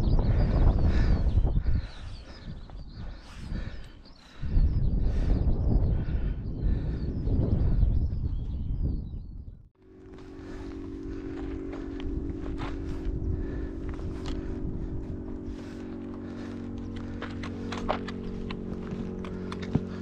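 Wind buffeting the microphone over footsteps on a rocky path. About ten seconds in it cuts off abruptly and gives way to steady held music chords, with faint footsteps ticking beneath.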